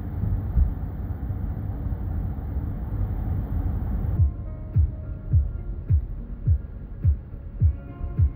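Steady road noise inside a moving minivan, a low rumble with hiss. About halfway through it cuts off and music takes over: a deep kick drum beat, a bit under two beats a second, with faint held tones above it.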